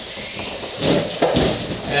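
Freestanding Wavemaster punching bag tipped and shifted on its weighted base across a mat floor: a scraping, rumbling stretch from a little under a second in, with two thuds close together in the middle as the base comes down upright.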